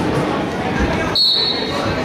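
A referee's whistle gives one short, high blast just over a second in, over spectators' voices.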